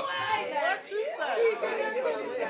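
Overlapping voices talking at once, a congregation's spoken response rather than any other sound.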